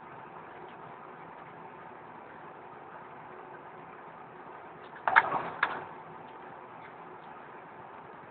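Skateboard clattering on the ground: a sharp clack about five seconds in, a brief rough rolling scrape, and a second clack about half a second later, over a steady background hiss.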